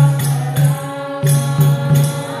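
Group kirtan: voices chanting a mantra over the deep strokes of a mridanga drum and the repeated clash of hand cymbals (karatalas), in a steady rhythm.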